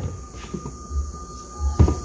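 A single sharp knock near the end as the aluminium tube pan full of batter is handled on the tabletop, over a low rumble and a faint steady high whine.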